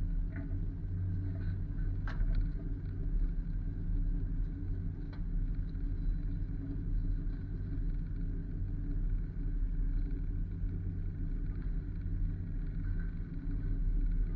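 Truck engine idling steadily with a low rumble, with a couple of faint clicks about two and five seconds in.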